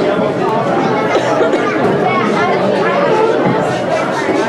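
Many voices chattering at once in a large, echoing hall: a roomful of people talking over each other.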